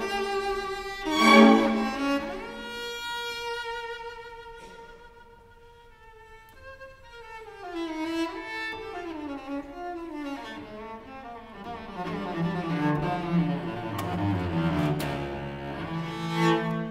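A 1684 Francesco Ruggieri cello bowed in a solo passage with orchestra. A loud note about a second in gives way to a long held high note that fades almost away around six seconds in, then descending runs lead into a fuller passage in the low register.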